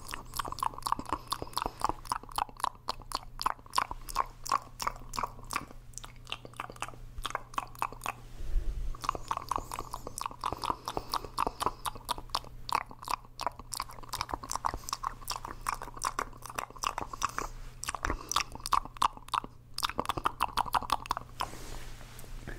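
Human mouth sounds, a fast run of tongue and lip clicks, pops and smacks, made into hands cupped around the mouth right at a microphone, with the cupped hands giving them a hollow tone. The clicking eases off briefly about six seconds in and again near the end.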